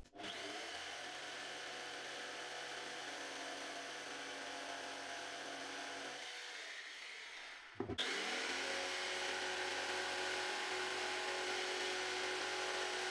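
Makita jigsaw running with its blade held against a coated board in an attempt to plunge-cut without a pilot hole; the blade only scratches the coating. The saw runs steadily, stops briefly about two-thirds of the way through, then starts again and runs on a little louder, the footage sped up to double speed.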